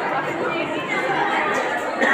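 Background chatter: many children's voices talking over one another in a large room.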